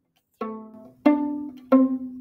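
Viola played pizzicato: three plucked notes about two-thirds of a second apart, each starting sharply and fading as it rings.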